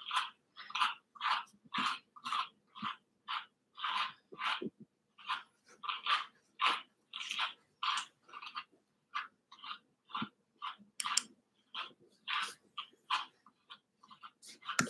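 Wire-pin slicker brush drawn in short downward strokes through a Cavoodle's curly coat on its back leg, each stroke a short crisp rasp, about two a second.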